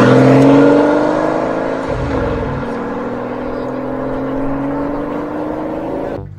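Car engine accelerating, its note climbing slowly and steadily, with a short break in the note about two seconds in.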